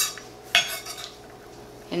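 Santoku knife clicking and scraping on a wooden cutting board as chopped onion is scooped up. There is a sharp click at the start and a short scrape about half a second in.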